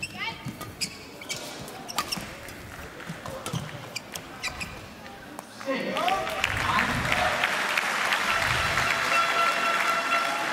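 Badminton rally: sharp racket strikes on the shuttlecock and players' footwork on the court, echoing in a large hall. About six seconds in, the point ends and the crowd breaks into loud cheering, shouts and applause.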